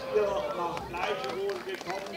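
Several people talking at once outdoors, with footsteps of marchers on cobblestones.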